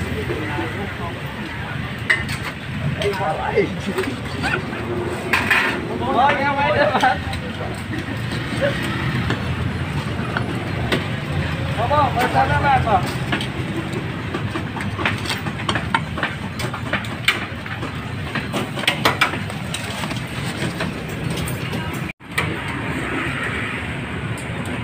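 A cleaver chopping roasted meat on a wooden chopping board: irregular sharp knocks over steady street traffic noise, with voices talking in the background.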